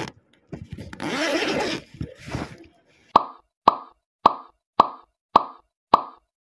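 A run of six short pop sound effects, about two a second, starting about three seconds in, each dying away quickly, the kind of pop an editor puts on as each line of on-screen text appears. A brief noisy swish comes before them, about a second in.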